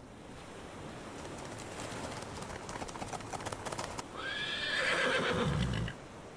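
Galloping horse hooves, a quick run of hoofbeats growing louder over the first few seconds, then a horse whinnies loudly about four seconds in.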